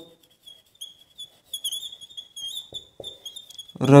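Whiteboard marker squeaking against the board while a word is written: a thin, high squeal that wavers with each stroke, with a few faint taps of the marker tip.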